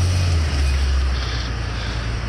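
Repo tow truck's engine running under load with a deep, steady rumble, loudest in the first second and easing off after.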